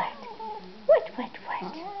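Long-haired cat grumbling: a couple of short rising-and-falling mews, then a long, drawn-out grumbling call that starts near the end. It is her talkative grumble, not an angry growl.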